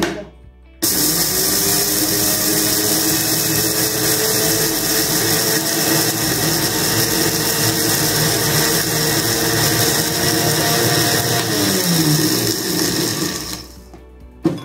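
Electric dry grinder (mixer-grinder) running steadily, grinding dry ingredients. The motor starts abruptly under a second in, and near the end it winds down with a falling pitch as it is switched off.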